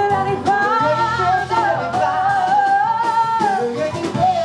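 Female jazz vocalist singing a long held, wavering note over a live band of piano, bass and drums, with cymbal strokes throughout.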